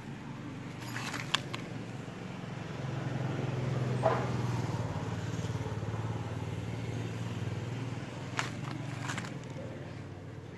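Low hum of a motor vehicle engine running, swelling about three seconds in, holding steady and easing off near the end, with a few sharp clicks.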